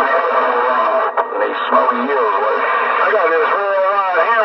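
Galaxy DX 959 CB radio's speaker on channel 28, carrying unintelligible voices of distant stations heard by skip, with thin, band-limited radio sound. There is a brief dropout with a click a little after a second in.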